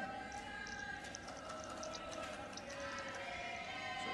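Sports-hall background sound from a live judo broadcast: a steady low murmur of distant voices across the hall, with a few faint short ticks.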